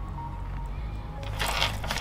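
Paper instruction leaflet handled and folded, a short rustle about one and a half seconds in over a steady low hum.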